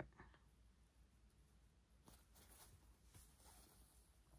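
Near silence: room tone, with a couple of faint soft ticks.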